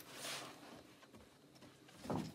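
Mostly quiet, with one brief soft rustle a quarter second in, from the movement of the dog and handler.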